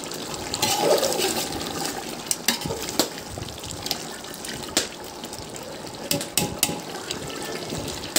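A large aluminium pot of chicken curry boiling hard over a wood fire: a steady bubbling hiss. A metal ladle stirs in it, and there are a few sharp clicks along the way.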